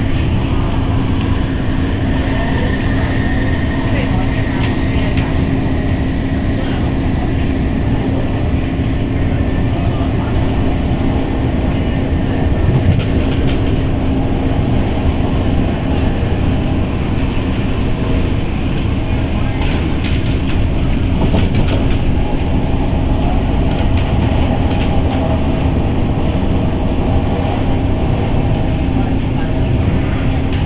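Steady rumble of an MTR metro train running at speed, heard from inside the carriage: wheels on rail under a constant motor hum. Another train passes on the adjacent track around the middle.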